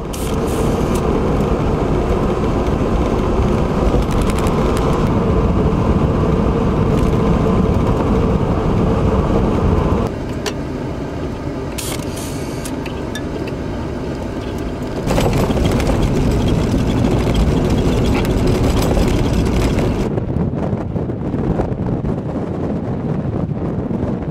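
Car driving, heard from inside the vehicle: a steady rumble of engine, tyres and wind. The sound changes abruptly in level and tone three times, getting quieter, then louder, then losing its hiss.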